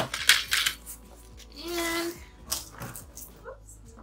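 Supply containers and a cardboard box being handled on a stainless steel table: a quick run of knocks and clatters in the first second, then scattered lighter knocks and scrapes.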